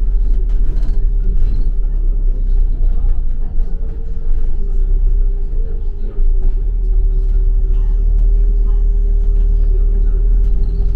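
Double-decker bus driving, heard from inside on the upper deck: a steady low rumble of engine and road with a held humming tone that wavers slightly in pitch.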